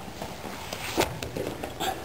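Bare feet and bodies shuffling on a wrestling mat, with a short slap about a second in and a smaller one near the end.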